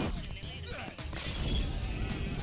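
Film sound effect of an explosion with glass shattering, the burst of breaking glass and debris rising about a second in, over background film music.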